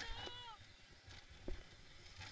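A roller coaster rider's high squeal, gliding down in pitch through the first half-second, then quieter ride noise with a single knock about one and a half seconds in.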